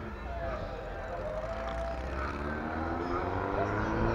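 A motor vehicle's engine running steadily with a low rumble, its pitch rising slowly in the second half as it picks up revs.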